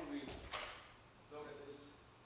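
A single sharp knock on a hard surface about half a second in, amid brief snatches of a man's voice.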